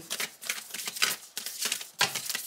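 Tarot cards being shuffled and handled in the hands: a quick, irregular run of crisp card clicks and snaps.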